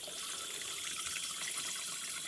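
Water from a 12 V pump's feed hose running through a float valve into a plastic stock trough, a steady hissing splash. The trough is nearly full and the float is beginning to close the valve.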